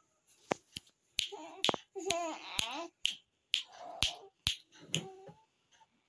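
A two-month-old baby cooing and babbling in several short, high-pitched vocal bursts, with about ten sharp clicks in between.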